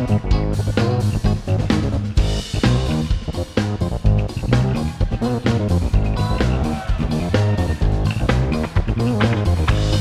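Live rock band playing an instrumental passage: electric guitars, bass guitar, drum kit and keyboards, with a steady drum beat.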